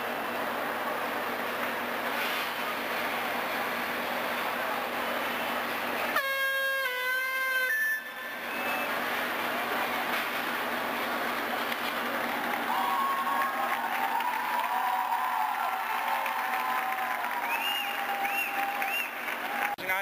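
Steady crowd noise with a single horn blast about six seconds in, lasting about a second and a half and dropping slightly in pitch.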